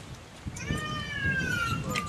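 An animal's single long call, lasting about a second and a half and falling slowly in pitch, over low murmuring.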